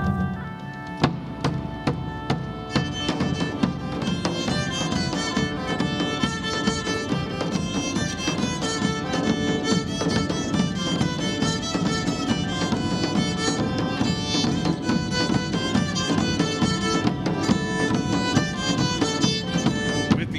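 Live instrumental Celtic folk music: a bagpipe with its drones and a bowed nyckelharpa play the tune over a steady beat from large drums struck with sticks. The full band comes in about a second in.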